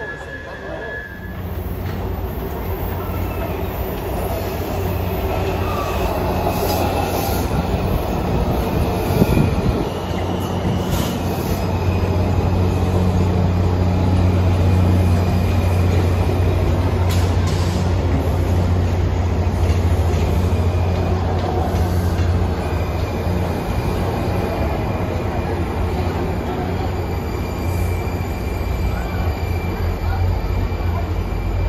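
Washington Metro railcar moving at the platform: a steady low hum with thin high whining tones over it, easing off about two-thirds of the way through.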